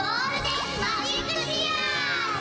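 Several high children's voices squealing and cheering together over music, their pitches sliding up and down.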